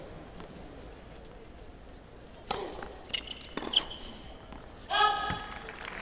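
Tennis ball bounced on a hard court before a serve: a few sharp knocks between two and a half and four seconds in. Near the end a single high voice calls out for about a second.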